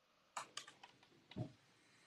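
Near silence, with a few faint clicks in the first second and one more faint, short sound a little past the middle.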